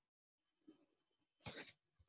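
Near silence during a pause in a video call, with one short faint sound about one and a half seconds in.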